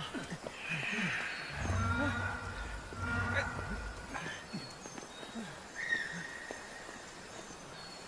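Short human vocal sounds such as grunts and exclamations, with faint short high chirps. A low rumble swells from about one and a half to four seconds in.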